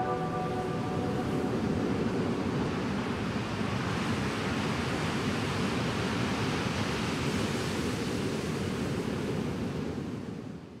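The closing wash of an ambient electronic track: the last sustained chords die away in the first second, leaving a steady, even hiss-like noise bed with no melody.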